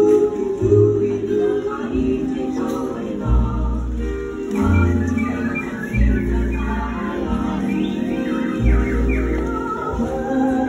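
Recorded show music: voices singing together over a slow, steady low beat that falls about once every second and a half.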